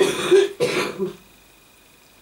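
A man clears his throat in several short bursts over about the first second, then only faint room sound.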